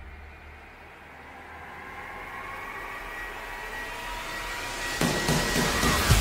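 A whooshing swell that rises steadily in pitch and loudness over several seconds, like a jet flyby, used as an edit transition. About five seconds in, a sharper, louder noise with clicks cuts in.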